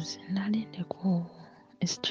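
A soft, low speaking voice in short broken phrases, over faint background music.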